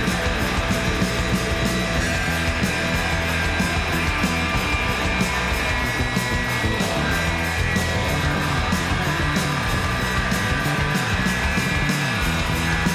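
Rock band playing: electric guitars, bass and drums in a loud, dense mix with a steady drum beat.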